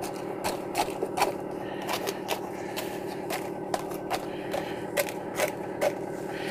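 Irregular scrapes and crinkles of aluminium foil, about two or three a second, as a gloved hand pulls softened, half-melted HDPE plastic down off the sides of a foil-lined pan, over a steady low hum.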